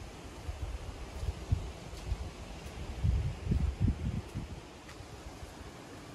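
Wind buffeting the microphone in uneven low gusts that grow stronger about halfway through, over a faint steady outdoor hiss.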